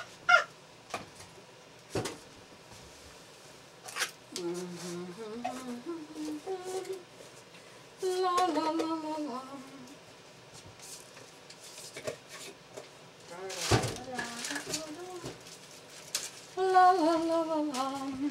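A woman humming a tune to herself in three short phrases, with a few knocks and clatters from items being handled on a kitchen counter; the loudest is a single sharp knock a little past the middle.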